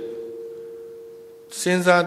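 A steady single-pitched ring from a public-address system, likely microphone feedback, fading over about a second and a half in a pause of the talk. A man's speech resumes near the end.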